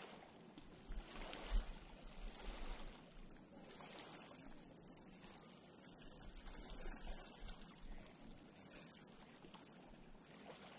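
Small lake waves lapping faintly on a cobble shore, a steady wash of water. Low wind rumble on the microphone comes and goes, strongest a second or two in and again about halfway through.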